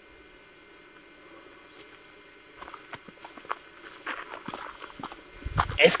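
Footsteps through dry forest undergrowth: a run of small snaps and rustles that starts faintly about halfway and grows louder. A low thud comes just before a man starts speaking at the end.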